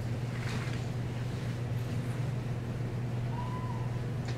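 Handheld whiteboard eraser wiping across a whiteboard, faint brushing strokes over a steady low hum, with a short faint squeak a little past three seconds in.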